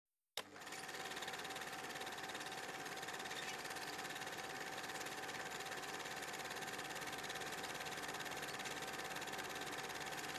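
Film projector running: a steady, rapid mechanical clatter with a faint steady whine, starting abruptly just under half a second in.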